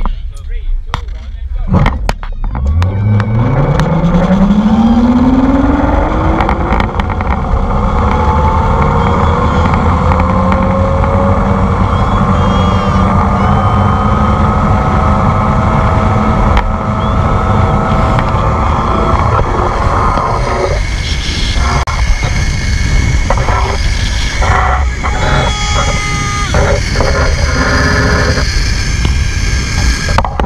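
A zip-line trolley running along its steel cable, with loud wind rushing over the microphone. A few seconds in, the trolley's whine rises steeply in pitch as the rider accelerates off the launch, then keeps climbing slowly as the speed builds.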